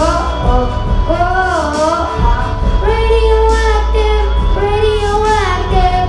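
A young boy singing through a microphone and PA over backing music with deep bass, holding long notes that bend and glide in pitch without clear words.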